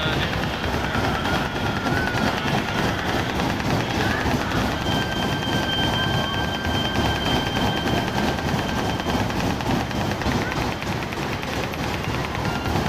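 Fairground ride in motion: its cars running round a circular, undulating track, making a steady rumbling rolling noise. A steady high tone sounds for about four seconds midway.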